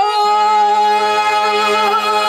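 A male singer holding one long, slightly wavering note in a Telugu drama padyam. A steady low harmonium note sounds under it, coming in just after the start.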